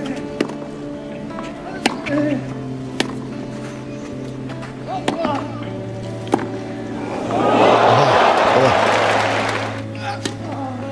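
A tennis rally on clay: about five sharp racket-on-ball hits over a background music track with sustained low chords. About seven seconds in, the crowd breaks into loud cheering and applause for a couple of seconds as the point ends.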